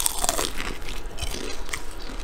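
Close-miked crunching bites into a piece of deep-fried, nori-wrapped chicken: a run of crisp cracks from the fried coating as the teeth go through, then chewing.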